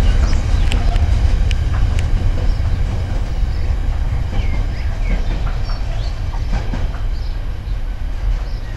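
Container wagons of a Freightliner intermodal freight train rumbling away along the track. Sharp wheel clicks over the rail joints come in the first couple of seconds, and the rumble slowly fades as the train recedes.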